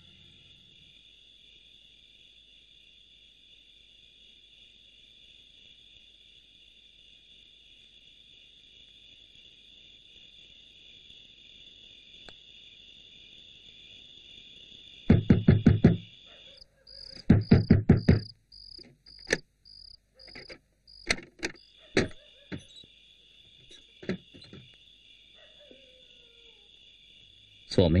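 Crickets chirring steadily in the night. About halfway in comes a rapid run of loud knocks on a door, a second run a moment later, then scattered single knocks.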